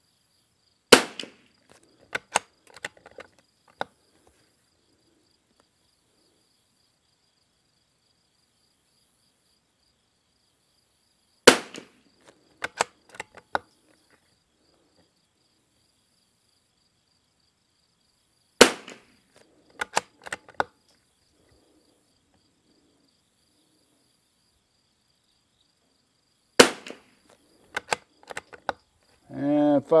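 Four shots from a Lithgow LA101 bolt-action rifle firing RWS R50 .22 rimfire match ammunition, spaced several seconds apart. Each shot is followed a second or two later by a quick run of clicks as the bolt is worked to eject the case and chamber the next round.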